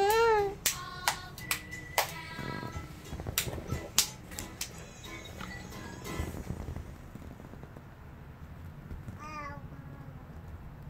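Small children clapping hands unevenly along to children's song music from a TV. A young child gives a short, high, rising-and-falling squeal at the start and another about nine seconds in.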